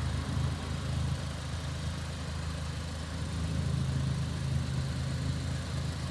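Ford Fiesta ST-2's turbocharged 1.6-litre four-cylinder engine idling steadily.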